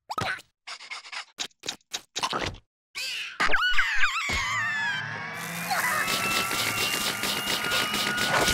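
Cartoon eating sound effects: a run of short plops and gulps, then squeaky gliding vocal noises from a larva. From about four seconds in comes one long continuous slurp of noodles being sucked in, which grows denser and rattling near the end.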